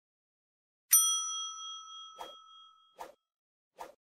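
A bell-like notification ding sound effect about a second in, rings for about two seconds and is cut off, with three short soft clicks, like mouse clicks, spaced through the second half.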